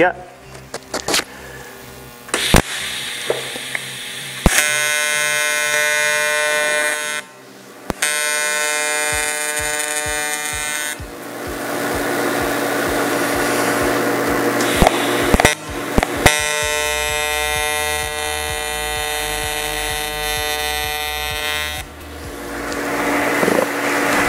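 AC TIG welding arc from a Miller Dynasty 280 at about 160 amps on 1/8-inch 5000-series aluminum, buzzing in several bursts of a few seconds each as the corners of a T-joint are tacked. Each arc strike starts with a sharp crack.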